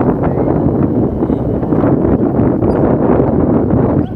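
Loud, steady wind rushing over the microphone of a phone carried on a moving motorcycle, mixed with the motorcycle's own running and road noise.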